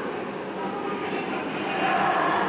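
Steady, even rumbling noise with no distinct events.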